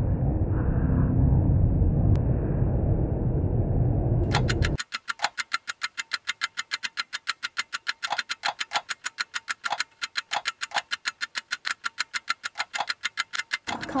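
A loud low rumble for the first few seconds that cuts off abruptly, followed by a fast, even run of sharp clicks, about five a second, lasting to the end.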